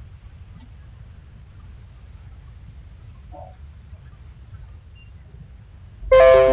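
Quiet background noise from an open microphone on a video call, a steady low rumble, with a few faint short sounds: a brief high chirp about four seconds in and a faint blip a little before it.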